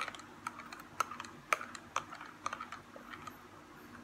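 Metal spoon clinking irregularly against the inside of a glass as a drink is stirred, light clinks about two or three a second.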